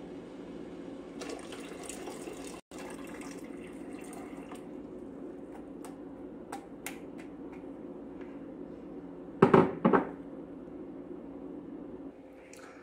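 Water poured from a glass measuring cup into a stainless-steel pot, a steady splashing pour with small ticks. Near the end come two loud knocks about half a second apart.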